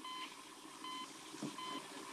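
Hospital bedside patient monitor beeping faintly and regularly: three short high beeps, a little under a second apart, in time with the patient's heartbeat.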